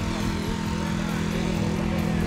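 An engine running steadily at an even, unchanging pitch.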